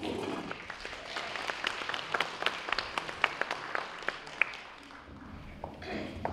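Audience applauding, starting suddenly and dying away about five seconds in.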